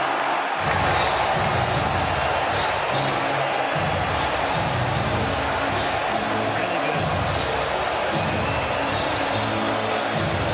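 Arena crowd cheering and applauding, with music and its bass line coming in about half a second in.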